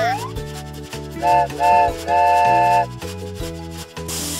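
Cartoon toy train whistle tooting two short blasts and then one longer one, all on the same pitch, over light background music.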